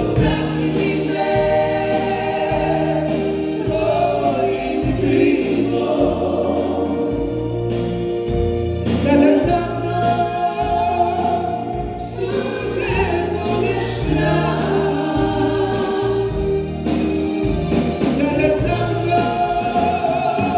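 Live band performing a song with a female lead singer and backing vocal harmonies over keyboards, guitars, drums and bass.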